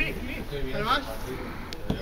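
Men's voices calling out across a football pitch, with one sharp knock just before the end.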